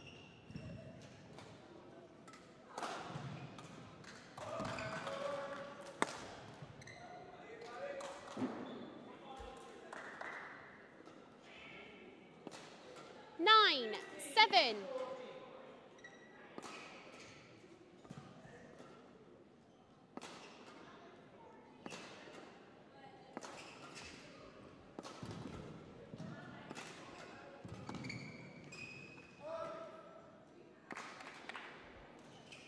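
Badminton rally on an indoor court: racket strings striking the shuttlecock in sharp cracks roughly a second apart, with players' footfalls. The loudest sound, about halfway through, is a couple of quick gliding squeals of shoe soles skidding on the court floor.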